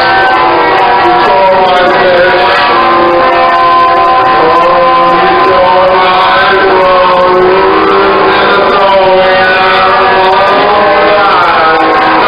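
Live post-punk/garage rock band playing loud and distorted, heard through a muffled bootleg recording. Sustained notes bend up and down over a dense wall of sound.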